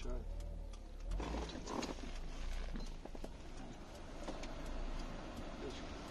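Honda Accord's 2.4-litre four-cylinder idling with the air conditioning on, heard inside the cabin as a steady low rumble, with faint voices over it.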